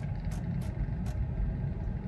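Low, steady road and tyre rumble inside a Tesla electric car's cabin as it pulls away and speeds up slowly, with a few faint ticks in the first second.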